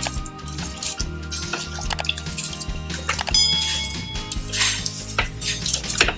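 Background music with scattered clinks and scrapes as raw duck pieces, onions and spices are mixed by hand in a steel pressure cooker, the hand and bracelet knocking against the metal pot.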